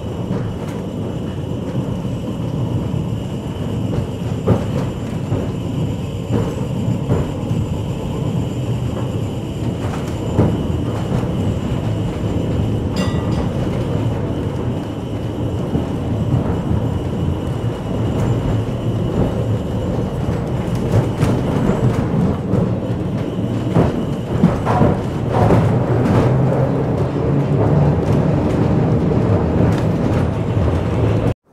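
Electric heritage tram running along the track, heard from its open front platform: a steady rumble of the car and its wheels on the rails, with occasional short knocks.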